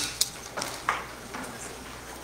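Room tone with a few short clicks and knocks in the first second.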